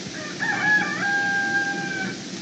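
A bird's call, like a crow: a few short wavering notes, then one long held note lasting about a second.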